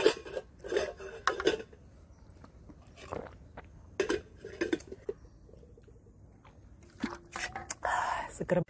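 Stainless steel stacking food containers clinking and knocking together as they are handled and stacked, in a scattered series of short metallic clinks.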